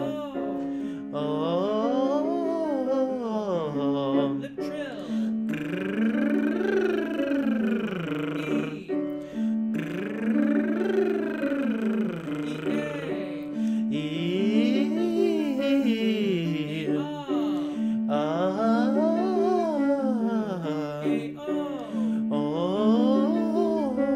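Vocal warm-up exercise with a man's closed-lip voice sliding up and back down in smooth arches, one about every four to five seconds, over held piano notes.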